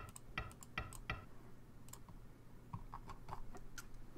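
Scattered light clicks at a computer, used to step through the moves of a game record: a few in the first second, then a quicker run near the end, over a faint steady low hum.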